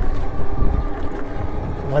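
Wind buffeting the microphone on a moving e-bike: a steady low rumble, with a word spoken at the very end.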